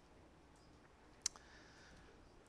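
Near silence: quiet room tone with a single sharp click about a second in.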